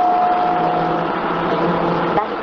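City bus running noise heard inside the cabin: the engine and drivetrain under way, with a steady whine that stops about halfway through.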